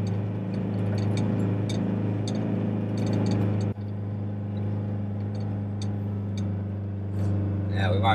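A 4WD's engine running steadily under load as it climbs a steep gravel track, a low even hum. Just under four seconds in it breaks off abruptly for an instant and carries on a little quieter.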